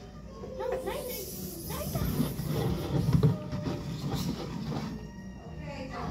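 Indistinct background voices in a large room, with low, uneven rumbling and a few bumps near the middle.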